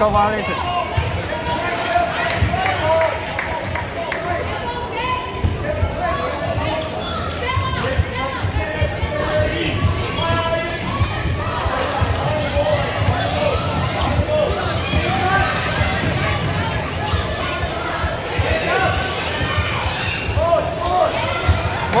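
Basketball bouncing on a hardwood court during play, with many indistinct voices of players, coaches and spectators calling and chatting, echoing in a large sports hall.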